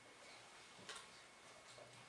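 Near silence: faint room tone with one soft click a little under a second in.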